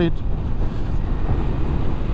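Wind rushing over the microphone of a Ducati Multistrada V4S at riding speed, over a steady low rumble of engine and road. There is no rising rev in it; the bike is slowing into a bend.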